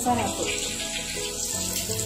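Chirote deep-frying in hot oil, a steady hissing sizzle and bubbling, with background music under it.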